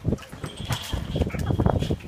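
Animal sounds from the sea lions and pelicans crowding the fish-market floor: a run of short, irregular low sounds, busiest in the second half. A thin high whistle starts about half a second in and lasts a little over a second.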